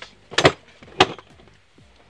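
A mug being set down on a store shelf: two sharp knocks about half a second apart.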